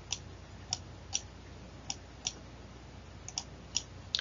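Computer mouse clicking: about eight short, sharp clicks at irregular intervals, several in quick pairs, over a faint steady hum.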